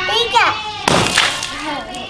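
A water balloon bursting once, about a second in, struck with a toy hammer, amid a young girl's high excited voice.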